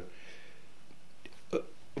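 A pause in a man's speech: a soft breath and a few faint mouth clicks, then a short, throaty spoken word near the end.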